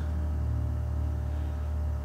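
Steady low hum of running aquarium equipment, even in level throughout.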